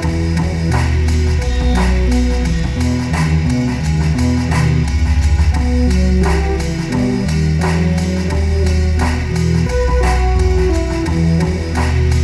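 Breakcore electronic music: a heavy bass line stepping between notes under a plucked, guitar-like melody, with sharp drum hits cutting through at an uneven rhythm.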